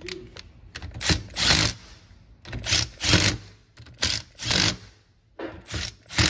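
Cordless impact driver run in short bursts, mostly in pairs about every second and a half, running the nuts down on a lever hoist's gear case cover.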